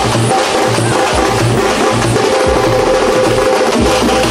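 Large double-headed bass drums beaten with sticks in a steady, loud processional rhythm of about two beats a second, with a held melodic line sounding above the drums.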